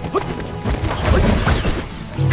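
Action-scene soundtrack: dramatic background music overlaid with several crashing impact sound effects in quick succession.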